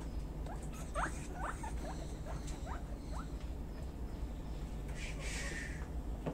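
Guinea pigs squeaking: a run of short, upward-sliding squeaks, about eight of them in the first three seconds, over a steady low hum. A brief scratchy rustle comes near the end.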